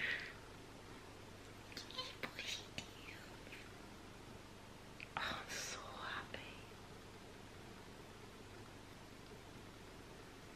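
A woman's breathy whispers and gasps, in two short bursts about two seconds in and about five seconds in, over a quiet room.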